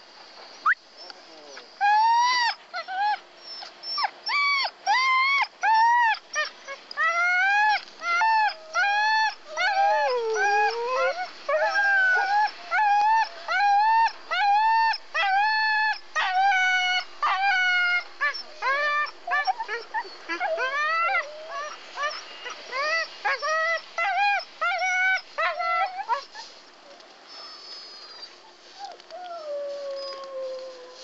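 Sled dogs whining: a rapid series of short, high cries that rise and fall, about two a second, stopping about 26 seconds in.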